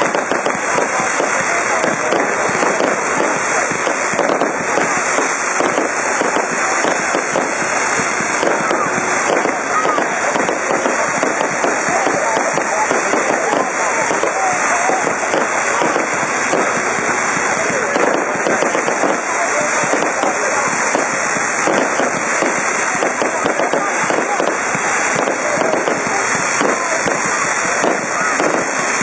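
Fireworks bursting in a dense, continuous crackle of pops and bangs, with no break.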